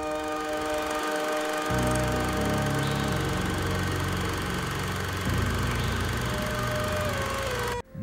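A low mechanical whirr of a running home-movie film motor comes in about two seconds in, under a held, eerie synthesizer chord. Both cut off suddenly just before the end.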